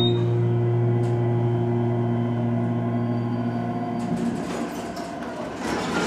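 KONE hydraulic elevator's pump motor humming steadily as the car rises. The hum stops about four seconds in as the car levels at the floor, and the car doors slide open near the end.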